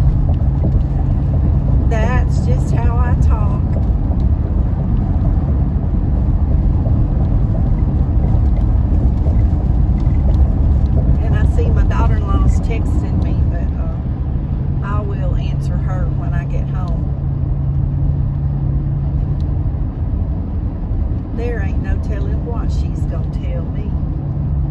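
Steady road and engine rumble inside a car cruising at highway speed, with a low steady hum that fades out for a stretch in the middle and comes back.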